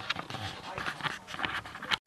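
Handling noise from a camera being repositioned by hand: a run of close knocks, taps and rustles.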